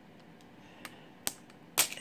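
Clear protective plastic film being peeled off the back of a smartphone: a few short, sharp crackles, the loudest about a second and a quarter in and again near the end.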